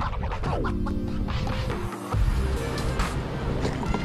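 Background music with stepped melodic lines over a steady bass, including a falling pitch glide about half a second in and a brief drop in the bass near the middle.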